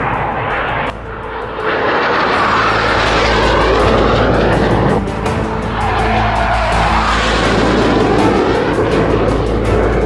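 Jet aircraft flying past, a loud rushing roar with pitch that sweeps up and then falls, breaking off and returning about one second and five seconds in. Music plays underneath.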